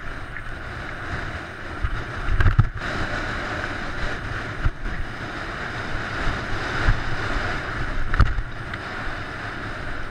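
Wind rushing over the microphone of a rider-mounted camera during a fast mountain-bike descent, with tyres rattling over loose slate and gravel. Low thumps come as the bike hits bumps, the heaviest about two and a half seconds in and again near eight seconds.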